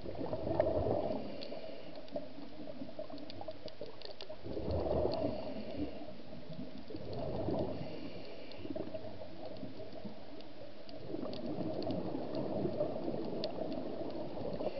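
Scuba regulator exhaust heard underwater: the diver's exhaled bubbles rumble and gurgle in four bursts a few seconds apart, one per breath.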